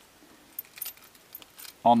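A bunch of car keys jingling in the hand: a scatter of light metallic clinks as the key is brought to the ignition.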